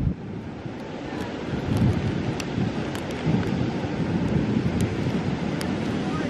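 Wind buffeting the microphone in gusts, with ocean surf washing behind.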